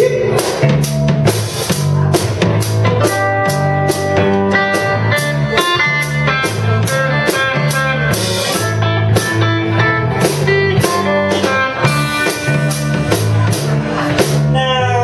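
A live blues band's instrumental passage: electric guitar playing note lines over a repeating bass guitar figure and a drum kit keeping a steady beat.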